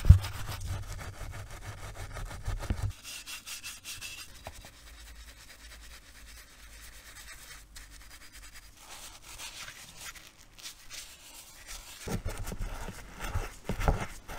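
Stiff bristle brush scrubbing a soapy aluminium engine crankcase part in degreaser, in quick back-and-forth strokes that come in spells. There are low knocks near the start and near the end as the part is handled.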